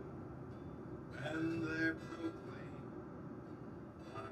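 Acoustic guitar strumming a hymn accompaniment, with a man's voice singing one phrase from about one to two seconds in.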